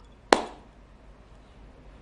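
A single sharp tap about a third of a second in, followed by quiet room tone.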